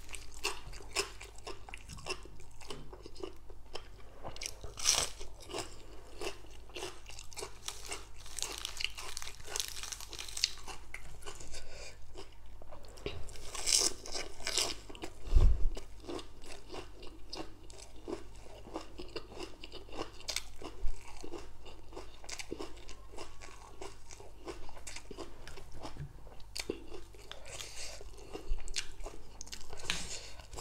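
A person chewing crunchy raw greens and green papaya salad wrapped in lettuce, with many irregular crisp crunches. A single low thump about halfway through.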